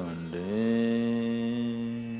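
A man's voice chanting, sliding up into one long held note that slowly fades.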